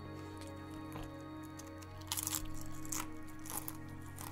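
Pretzel crisps being crunched close to the microphone: a quick run of crunches about two seconds in and a couple more near the end, over soft background music.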